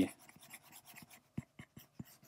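Stylus tip drawing on an iPad's glass screen: a faint scratching of a sketched stroke, with a few light taps about a second and a half in.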